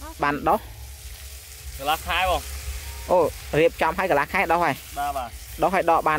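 A person talking in short repeated phrases with pauses between, over a steady low hum and a faint hiss.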